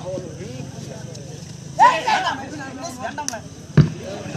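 Voices of kabaddi players and spectators shouting and calling over a low babble, with one loud shout about two seconds in and a sharp thud just before the end.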